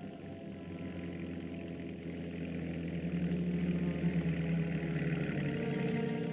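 Background film music: sustained held chords with no beat, swelling louder about three seconds in.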